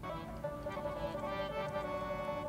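Harmonium holding a steady sustained chord, several reedy notes sounding together without a break.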